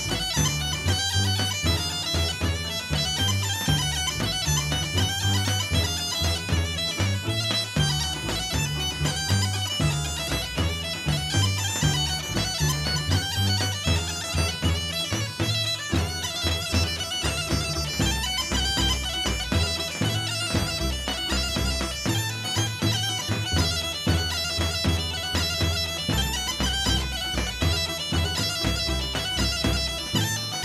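Bulgarian folk dance music: a reedy wind melody over a steady drone, with a driving low beat throughout.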